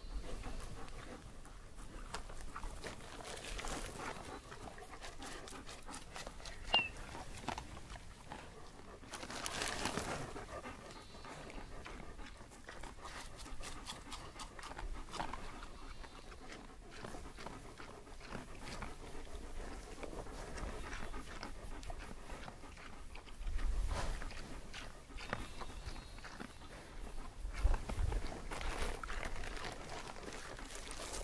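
A dog panting, with a few low rumbles near the end.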